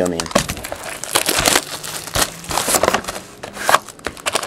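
Crinkling and tearing as a sealed trading-card hobby box is unwrapped and its cardboard lid pulled open by hand: an irregular run of crackles and rustles.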